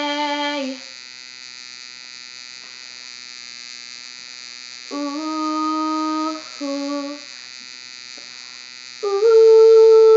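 A girl's unaccompanied voice holding the end of a sung note, which fades just under a second in, then wordless hummed phrases of long held notes: one pair about five seconds in and a louder one near the end. In the pauses, a steady electrical hum and hiss from the recording.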